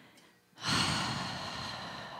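A long, breathy exhale close to the microphone. It starts suddenly about half a second in and fades away over about two seconds.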